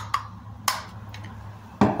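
A few light clicks and knocks from the Skywatcher Star Adventurer 2i tracking mount being handled, the sharpest about two-thirds of a second in, over a steady low hum.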